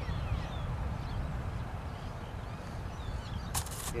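Wind rumbling on the microphone, with the faint whine of a 30 mm electric ducted fan falling in pitch over the first second as it spins down for a glide landing. A brief scratchy rustle comes near the end.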